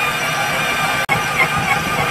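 KitchenAid stand mixer running steadily, its dough hook kneading bread dough that has pulled clear of the bowl's sides into a ball. The sound cuts out for an instant about halfway through.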